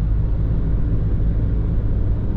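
Steady low rumble of road and engine noise inside the cabin of a Mahindra XUV300 cruising on a highway.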